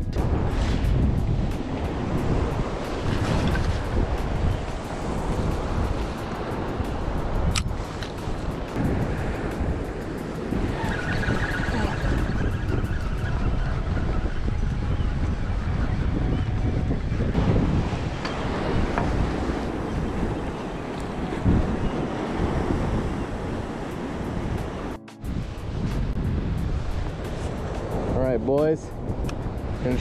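Wind buffeting the microphone over waves breaking on rocks, a steady, gusting rush heaviest in the low end.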